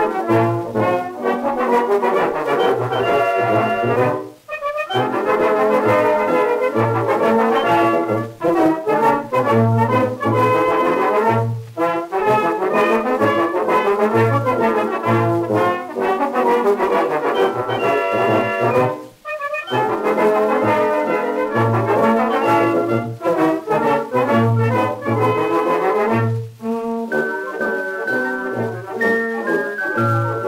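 Brass band playing a march on an early acoustic recording played back from a shellac 78 rpm disc, with the music mostly in the middle range and a faint hiss above it. The band breaks off for a moment a couple of times, and near the end it drops to softer held chords.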